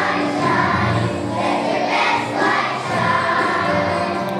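A large choir of young children singing together.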